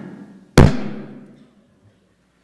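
A single loud thump close to a microphone about half a second in, dying away over about a second.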